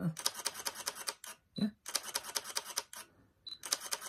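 Fujifilm GFX100's mechanical focal-plane shutter firing in continuous bursts. Rapid clicks, several a second, come in runs of about a second with short pauses between.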